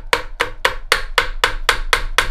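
Copper hammer tapping on the crankshaft of a Reliant 750cc engine, about four steady blows a second, to drive the tight crank free of the block.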